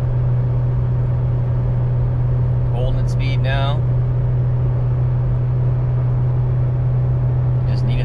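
Toyota 4Runner's 4.0-litre V6 heard from inside the cabin, pulling steadily at high revs under trailer load on a hill climb after a downshift: a loud, even drone with road noise.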